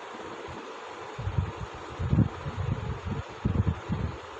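Low muffled rubbing and bumping from a hand writing with a pen on a notebook page, irregular from about a second in, over a steady background hiss.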